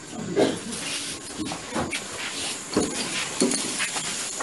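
Room noise of a gathered congregation in the pause after a prayer: a steady hiss with scattered short knocks and brief indistinct voice sounds.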